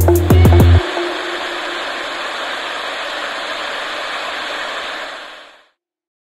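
The rap track's beat, deep sliding bass and drum hits, stops under a second in, leaving a steady hiss of static that fades out near the end.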